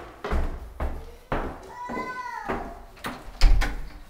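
Footsteps climbing wooden stairs: a series of thuds about two a second, with a short squeak about two seconds in and a heavier thump near the end.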